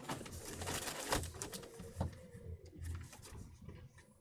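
Rustling and handling of plastic packaging and small items, with a couple of light knocks about one and two seconds in.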